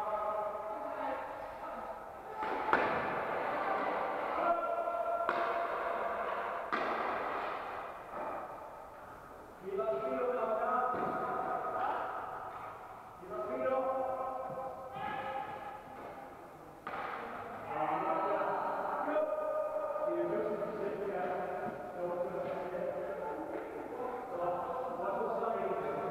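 Indistinct voices echoing around a large sports hall, some drawn out like calls, with a few sharp thuds; the loudest thud comes about three seconds in.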